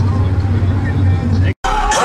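A vehicle engine idling with a low, steady rumble under background voices, cut off abruptly about a second and a half in. Music with singing starts near the end.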